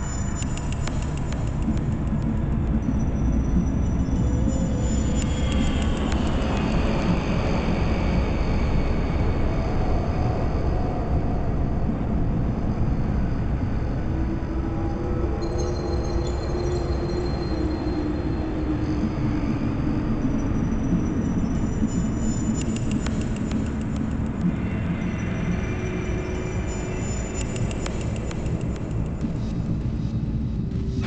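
A dense electronic drone soundscape: a deep steady rumble under overlapping sustained tones that shift in pitch, with a high tone sliding down about five seconds in.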